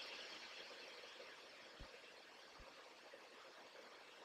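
Near silence: room tone, with two faint soft knocks a little under a second apart about halfway through.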